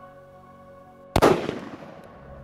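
A single rifle shot from a Thompson/Center Compass bolt-action rifle in .30-06, a little over a second in, sharp and loud with a tail that dies away over about half a second, over soft background music.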